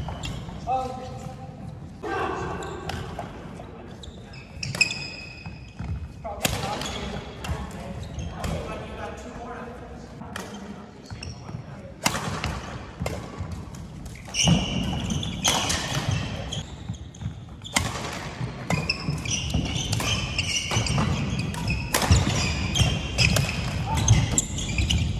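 Badminton doubles play on a wooden indoor court: rackets hitting the shuttlecock in sharp smacks, with short squeaks that fit sneakers on the floor. It gets busier and louder about halfway through as a rally gets going.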